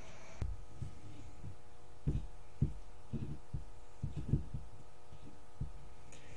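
Soft, low knocks and bumps of handling at irregular intervals, with a sharper click about half a second in, over a steady electrical hum.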